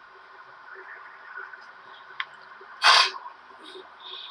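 Faint steady background with a thin click about two seconds in, then one short, sharp burst of breath noise from a person about three seconds in.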